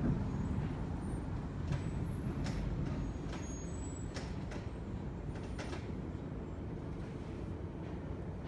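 Low steady mechanical rumble heard inside an elevated operator's cab, with a few faint light clicks.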